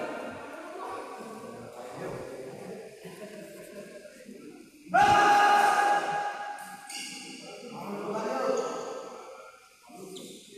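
Voices echoing in a large badminton hall. About five seconds in comes a sudden loud, held, steady note that fades over a second or so, and later a short stretch of voice.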